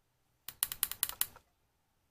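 Buttons on a Sigelei 213 box mod being pressed in quick succession, a rapid run of sharp clicks lasting under a second that brings up the mode menu.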